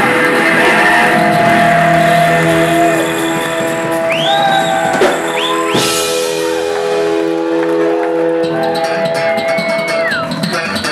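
Live rock band playing: electric bass, guitar and drums, with long held notes and a few rising pitch glides about four to six seconds in.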